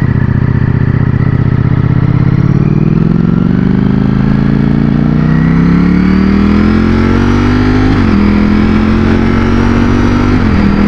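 Ducati Streetfighter V4's 1103 cc V4 engine accelerating hard from a stop, its pitch climbing steadily for several seconds. About eight seconds in the pitch drops suddenly as it shifts up a gear.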